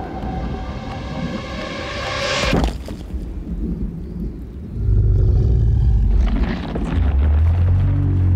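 Film-trailer music and sound design: a swelling tonal riser that builds and then cuts off abruptly, followed by deep, sustained rumbling booms.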